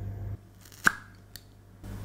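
Two clicks from handling a plastic dog paw balm container: a sharp click with a brief ring a little under a second in, then a fainter click about half a second later.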